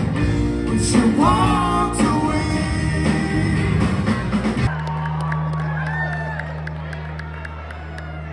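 Live rock band with electric guitars, bass and drums playing, stopping suddenly a little past halfway. A low tone rings on afterwards under crowd cheering and whoops.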